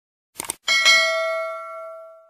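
Two quick clicks, then a single bell-like ding that rings on and fades away over about a second and a half.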